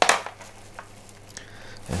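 Gloved hands pulling moss and pumice potting mix off orchid roots over a plastic tub: a short rustling clatter at the start, then faint scattered crackles and ticks.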